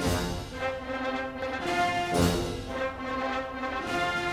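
Orchestral music: brass holding sustained chords, punctuated by heavy accented strokes about two seconds apart.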